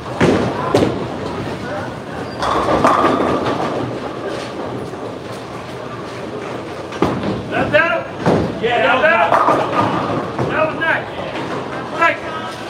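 Bowling alley clatter: sharp knocks and thuds of bowling balls and pins, twice just after the start and again about seven seconds in, with voices chattering in the background.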